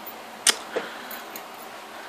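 A sharp click about half a second in, then a softer one, over a steady background hiss.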